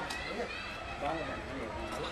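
Background voices of people talking, too indistinct to make out words.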